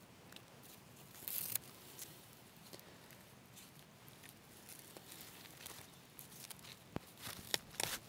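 Fibrous tulip tree bark being pulled apart by hand on a dead branch: faint rustling and tearing of the stringy strands, with a louder tear about a second and a half in and a few sharp clicks near the end.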